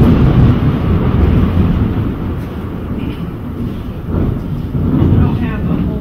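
A loud crack of thunder that breaks in suddenly and rolls on as a low rumble, swelling again about four and five seconds in before easing off.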